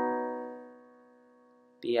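A B add9 chord on piano ringing out after being struck, its notes held steady and fading away to nothing by about three-quarters of the way through.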